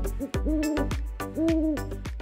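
Two owl hoots, each held about half a second with a slight waver, the second about a second after the first, over background music with a steady beat.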